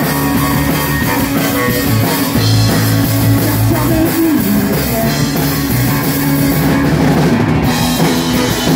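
Live rock band playing an instrumental passage: electric guitar, electric bass and drum kit with cymbals, without singing.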